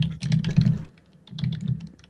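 Typing on a computer keyboard, picked up by a call participant's microphone: two quick runs of key clicks with a short pause between.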